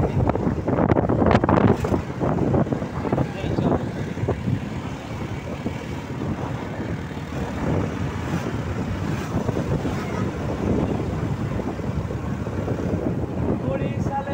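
Wind buffeting the microphone over the steady engine and road noise of a moving vehicle. The buffeting is loudest in the first few seconds.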